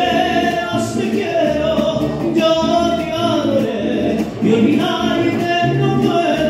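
Mariachi band performing live: several voices singing together over the band's accompaniment, holding long notes.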